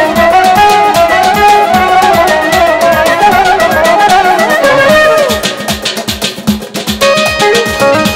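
Instrumental Azerbaijani wedding (toy) dance music from a band of guitar, garmon and synthesizer: an ornamented melody over a steady drum beat. A little after five seconds in the melody drops out, leaving mostly the drums, and the melody returns about two seconds later.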